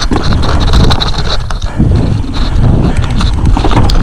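Mountain bike descending a rough, muddy trail, heard from a camera mounted on the handlebar: a constant loud rumble of tyres and frame over the dirt, broken by many small rattles and knocks.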